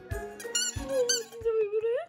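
Squeaky pink rubber ball toy squeaking as a small dog chews it, with a few short high squeaks followed by one long squeal about a second long that rises at the end. Bouncy background music with a steady beat plays underneath.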